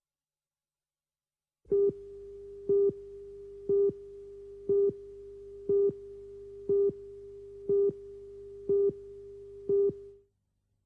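A steady pitched tone that starts about two seconds in, with a louder short beep on the same pitch about once a second, nine beeps in all, like a telephone busy signal.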